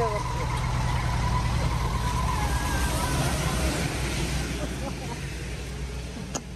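Steady low rumble of road traffic on a wet roadside, with faint voices; it eases slightly near the end.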